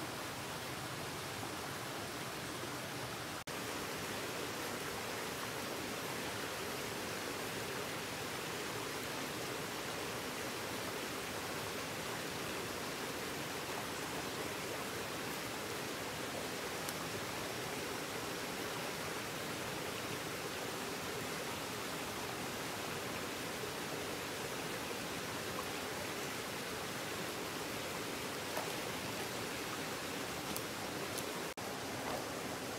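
Steady rushing of a small forest stream flowing over rocks.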